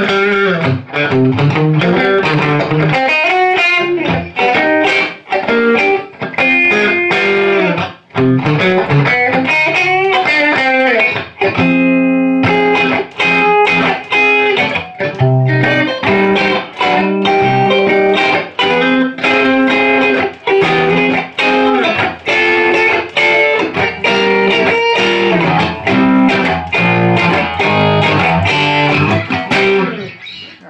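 Electric guitar played through an experimental valve amplifier whose output stage is three 6SN7 twin-triode tubes running in parallel, in class A. A continuous run of notes and chords, with one chord left ringing about twelve seconds in, and the playing stops right at the end.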